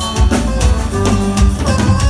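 Live band playing an instrumental passage with acoustic guitar, accordion, bass and drum kit: held accordion notes over strummed guitar and a steady drum beat, with no singing.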